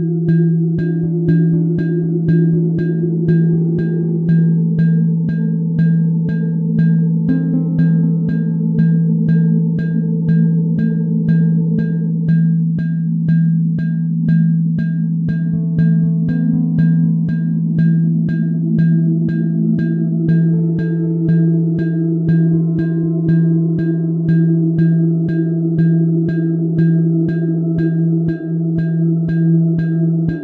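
Ambient electronic music coded live in Sonic Pi: a steady low bass-synth drone, with darker synth pad notes that shift every few seconds above it. Over this runs a fast, even ticking of short, high, pitched cowbell-sample hits, about four a second.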